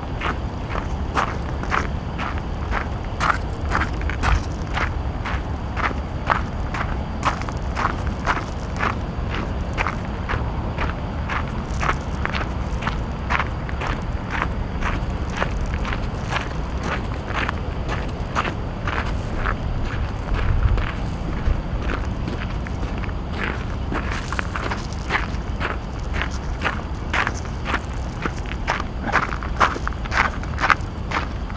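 Footsteps of a person walking at a steady pace, about two steps a second, over a steady low rumble.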